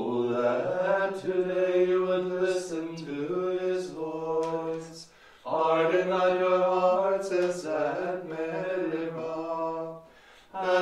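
Liturgical plainchant: psalm verses sung mostly on one held reciting note, in two phrases with a short breath pause about five seconds in.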